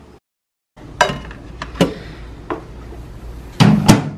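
Panasonic microwave in use: a few sharp clicks over a low steady hum, then a louder clunk near the end as its door is pulled open.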